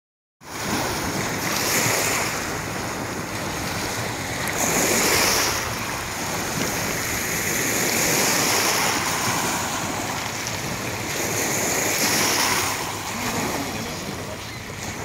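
Small lake waves lapping and washing onto a pebble shore, swelling and easing every few seconds, with some wind on the microphone.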